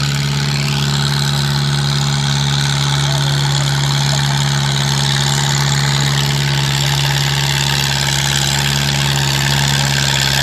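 Farmall 230 tractor's four-cylinder gasoline engine running steadily at one constant pitch.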